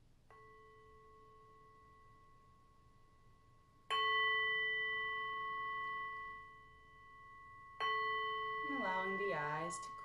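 A singing bowl struck three times, softly first and then twice more firmly. Each strike rings on in a long, slowly fading tone made of several steady pitches.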